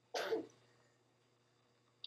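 A person clears their throat once, briefly, just after the start, and then it is near silent.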